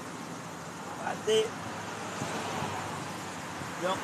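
Steady outdoor background noise, with a short voice sound a little over a second in and speech beginning at the very end.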